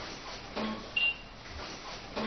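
Fax machine giving a single short high beep about a second in, as the fax number is keyed in on its panel.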